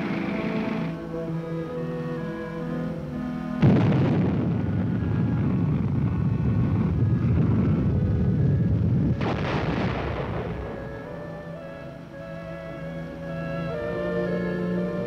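Film score music with a sudden loud explosion about four seconds in, a heavy rumble, and a second blast about nine seconds in that fades out: a Dart anti-tank missile striking its moving tank target.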